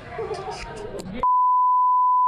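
Bars-and-tone test signal: a steady 1 kHz reference tone cuts in suddenly about a second in, replacing background restaurant chatter.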